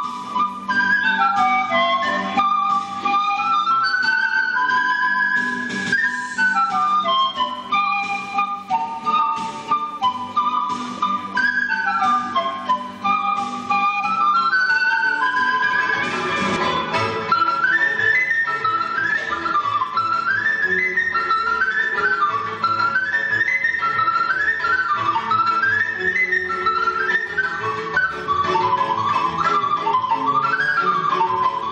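Pan flute music: a breathy melody moving in stepwise runs over a low held accompaniment, the runs growing quicker in the second half.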